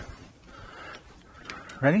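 Mostly a quiet room: a faint rustle, a single light click about one and a half seconds in, then a man's short spoken word near the end.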